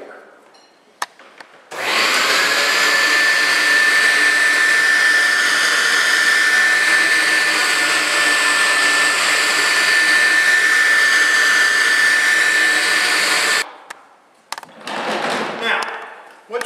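Upright vacuum cleaner switched on about two seconds in, its motor whine climbing briefly and then holding at a steady high pitch as it sucks up used dry-extraction cleaning sponges from a tile floor. It is switched off suddenly after about twelve seconds.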